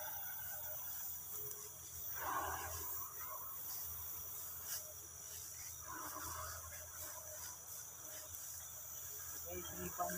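Night insects such as crickets chirring in a steady high-pitched chorus, with faint murmured voices twice, about two and six seconds in.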